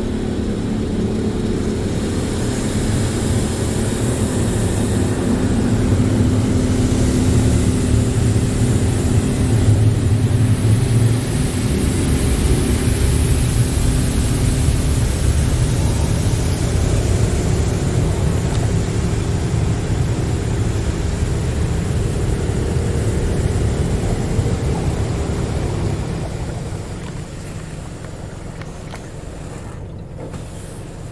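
Water jets of a Belanger Saber touch-free automatic car wash spraying over the car, heard from inside the cabin as a loud, dense rush with a steady machine hum under it. Near the end it drops off and becomes quieter.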